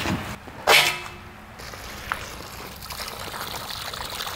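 Water trickling and dripping in an aluminium basin as raw crabs are washed and cleaned by hand, with one brief louder sound just under a second in.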